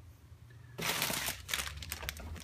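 Clear plastic bag crinkling and rustling as it is picked up and handled, starting just under a second in.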